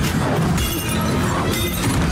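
Film sound effects of loud crashing and shattering glass, with a sudden strike at the start and another about half a second in.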